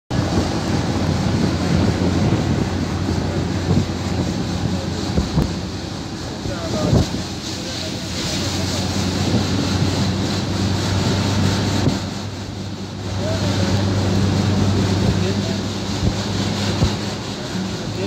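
Steady low engine hum and road noise from inside a moving van's cab, mixed with wind noise, dipping briefly about twelve seconds in.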